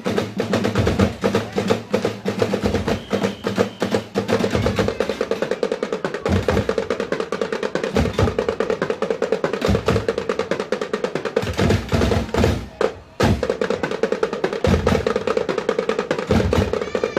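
Drumblek percussion ensemble playing a fast, dense rhythm on plastic barrel drums, with a brief gap about thirteen seconds in.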